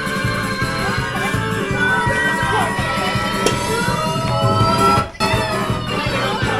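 Loud music with a steady low beat and held, sliding melody lines. It cuts out for a split second about five seconds in.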